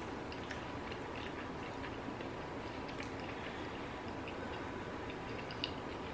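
A person chewing a bite of boneless chicken wing with the mouth closed: faint, scattered small wet mouth clicks over a steady low room hum.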